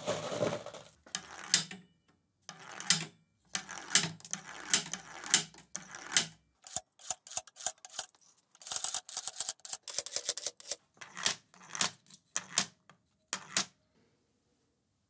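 Steel marbles clicking and clinking against each other and hard surfaces: irregular sharp clacks, thickening into a rapid flurry of clicks about two thirds of the way through, then a few single clicks near the end.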